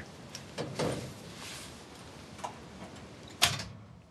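Scattered light metallic clicks and taps from tools working on the truck's battery cable connections, with one sharper click about three and a half seconds in; the engine is not running.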